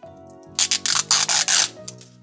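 Plastic wrapper of an LOL Surprise ball crinkling and crackling under fingers as it is picked at, a run of several crackly bursts lasting about a second from half a second in, over background music.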